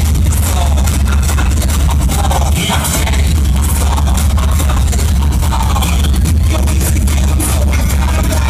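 Loud electronic dance music from a DJ set over a club sound system: a deep sustained bass note under a steady beat.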